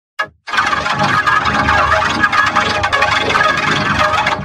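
Logo soundtrack run through a chain of audio effects such as ring modulation and vocoder, turning it into a loud, harsh, garbled wash of distorted sound. It starts with a short blip and sets in fully about half a second in.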